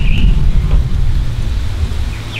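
Low, gusting rumble of wind buffeting the microphone, with a brief high-pitched chirp right at the start.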